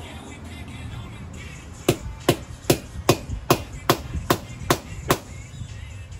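Hammer striking metal nine times in a quick, even rhythm, about two and a half blows a second, setting a rivet in the truck door's window hardware.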